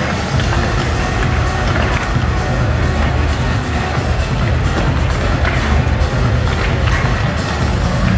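Loud music over an arena's sound system.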